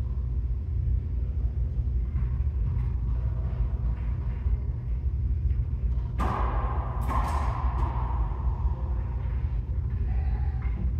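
Two sharp racquetball smacks about six and seven seconds in, each ringing on in the enclosed court's echo, over a steady low rumble.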